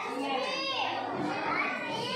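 Small children's high voices chattering and calling out while playing, mixed with adult talk.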